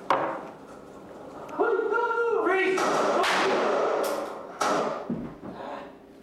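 Police firearms-training simulator scenario: a sharp bang right at the start, then loud shouted commands, then a few more sharp gunshot-like bangs in quick succession in a reverberant room.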